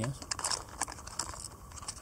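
Hands handling small items from a sewing kit: light crinkling and a string of small clicks and taps.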